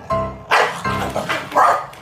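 A corgi barks about four times in quick succession from about half a second in, the last bark the loudest, over piano background music that is heard alone at first.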